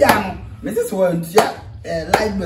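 A man talking excitedly in a local language, broken by two sharp smacks, one at the start and one about a second and a half in.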